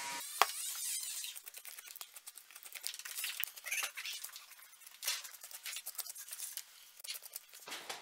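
Faint, irregular wet crackling and small clicks of a deer's cape being peeled and cut away from the skull with a knife.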